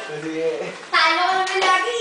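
A child's voice calling out in one long, loud, pitched call about a second in, after a brief low adult voice.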